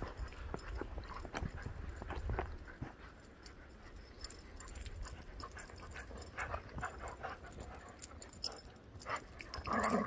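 Two dogs playing rough in deep snow, scuffling with short dog vocal sounds scattered through, and one louder one just before the end.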